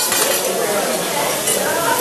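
Metal utensils and dishes clinking, with food sizzling on a hot steel teppanyaki griddle, over background voices.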